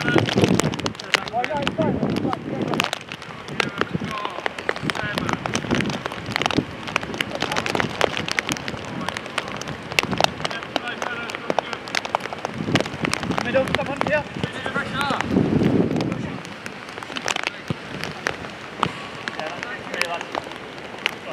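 Five-a-side football being played on an artificial pitch: players' distant shouts and calls, with many sharp taps and ticks throughout. Low rumbling surges come near the start and again about fifteen seconds in.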